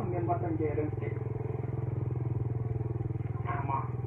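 A small engine running steadily, a low drone with a rapid even pulse, under a man's speech at the start and near the end.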